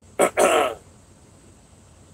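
A man clearing his throat: two short loud bursts in quick succession, the second one voiced.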